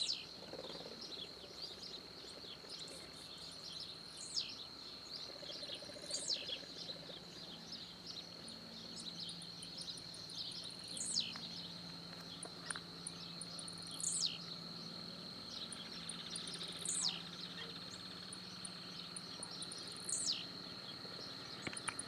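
Wild birds and insects at dawn: a steady high-pitched insect drone runs throughout, while a bird repeats a sharp, quickly falling whistle every two to three seconds. Faint rapid high ticks from other small birds come in between.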